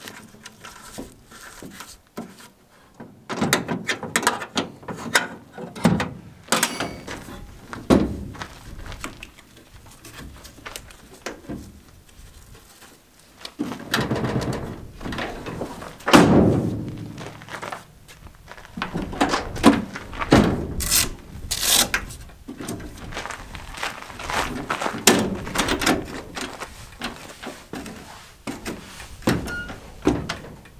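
Irregular knocks, clanks and thunks from a pickup tailgate and a fold-out aluminium tailgate ladder being handled, swung into place and stepped on, with the loudest clatter about halfway through and again a few seconds later.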